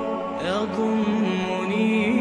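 Background music: a steady droning chord, with a wordless voice that slides up in pitch about half a second in and then holds a wavering note.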